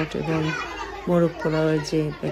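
A group of voices chanting or singing together in a steady rhythm of short held syllables, with children's voices among them.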